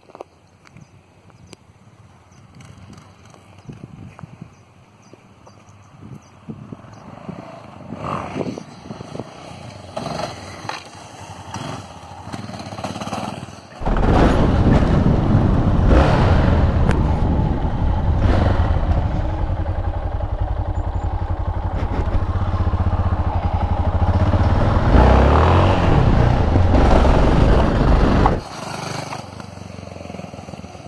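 A motorcycle engine. For the first half it revs at a distance. About halfway through it turns loud and close, with wind, for about fourteen seconds, then cuts off abruptly.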